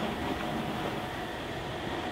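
Steady low background hum and hiss, with a faint steady tone and no distinct knocks or other events.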